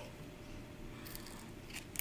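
Faint crackling of a thin foil-faced trading card being gripped and bent in the hands, a few soft crackles about a second in and again near the end.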